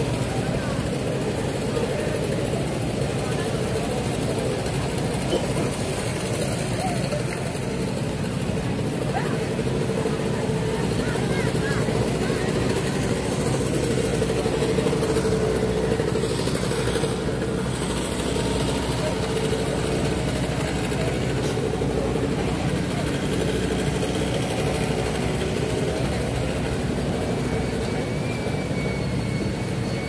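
Busy market crowd chatter, many voices blending into a steady din, over a steady mechanical hum.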